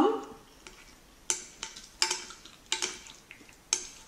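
Wooden chopsticks clicking against a ceramic baking dish while stirring through thick tteokbokki sauce: about seven sharp, separate clicks spread over a few seconds.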